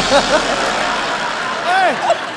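Studio audience laughing and clapping in a steady wash of noise, with voices over it, after a comic tongue-twister.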